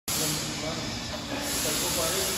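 Small belt transfer system running: its electric gear motor drives the two side belts with a steady hiss and a low hum.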